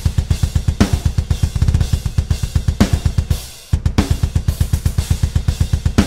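MIDI-programmed metal drum track played through a sampled drum library: fast, even double-kick under cymbals, with a hard snare hit about every two seconds. The hits have humanized, varied velocities so the programmed drums sound less robotic. The playback cuts out briefly about three and a half seconds in and starts again.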